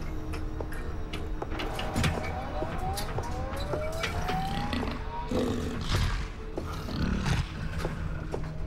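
A tense, eerie drama soundtrack: a steady low rumbling drone, scattered sharp clicks, and a few rising whistling tones about two to five seconds in.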